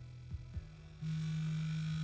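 A woman humming to herself with her mouth closed, holding one low steady note from about a second in for about a second and a half.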